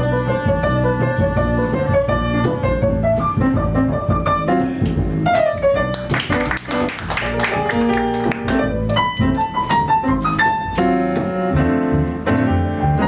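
Jazz piano and upright double bass playing an instrumental samba passage with no vocals, the piano carrying quick melodic runs over the bass line.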